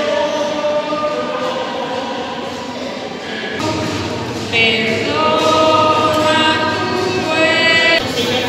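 Voices singing a slow hymn in long held notes. A little before halfway the singing grows louder, and a high voice with vibrato stands out over the rest.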